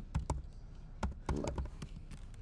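Computer keyboard keys clicking as a word is typed: a run of quick keystrokes, a short pause, then another quick run.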